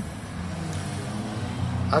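Motor vehicle engine running, a steady low hum that grows slightly louder near the end.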